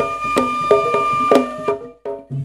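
Javanese pencak silat gending: a suling bamboo flute holds one long high note over a few sharp ketipung hand-drum strokes. The music breaks off suddenly near the end.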